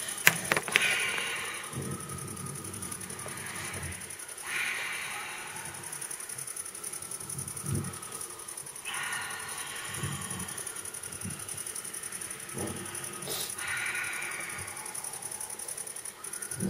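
Faint, breathy whooshing sound effect in four soft swells a few seconds apart, heard as the mysterious voice calling the character.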